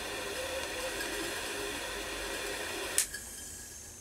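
Butane jet flame of a TorJet Turbo jet lighter hissing steadily against an aluminium can. It cuts off with a click about three seconds in.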